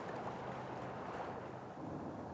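Quiet, steady rush of flowing river water, with a faint low hum underneath and no distinct events.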